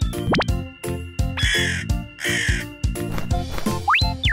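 Background music with a steady beat, overlaid with two crow caws about halfway through. Quick rising whistle-like glides sound just after the start and near the end.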